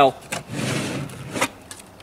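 Rustling and scraping for under a second as a hard armor plate is lifted and handled, then a sharp knock.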